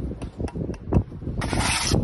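Bricklayer's steel trowel working brick and mortar: a few short knocks, then a loud scrape of the trowel across brick and mortar lasting about half a second near the end.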